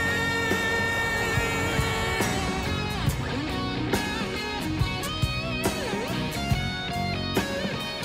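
Rock music led by electric guitar, played as the show's soundtrack. A long held note rings for about the first two seconds, then strummed chords run over a steady beat.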